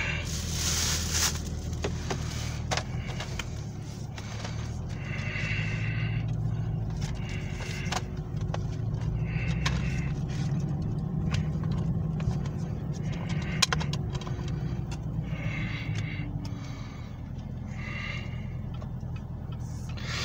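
Steady low rumble of a car cabin, with scattered clicks and rattles of a plastic DVD case being opened and its disc handled.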